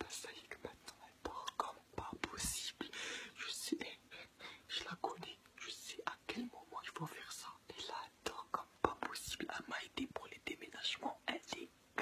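A young man whispering and laughing under his breath close to the microphone, in short breathy bursts.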